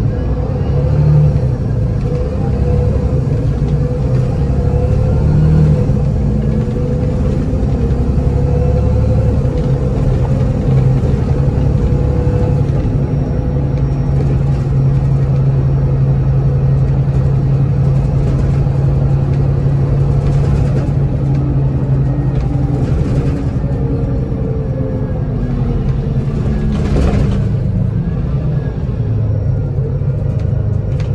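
Volvo 7700 city bus heard from inside at the rear, its Volvo D7C six-cylinder diesel engine and driveline running steadily under way. About three-quarters of the way through the engine note falls as the bus slows.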